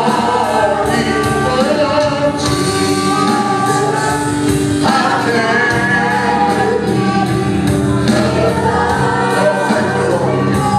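Live gospel worship song: several singers over a band with keyboards and a steady beat of about two strokes a second.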